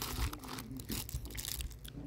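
Clear plastic zip-top bag crinkling as it is handled and opened, a run of short irregular rustles and crackles.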